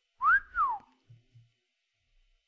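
A man whistling with his lips: a quick two-part whistle that rises and then slides down, like a wolf whistle of amazement.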